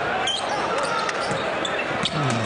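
Basketball arena sound during play: a ball being dribbled on a hardwood court over steady crowd noise.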